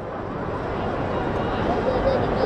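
Stadium crowd noise heard through a football match broadcast: a dense murmur of many voices that grows steadily louder.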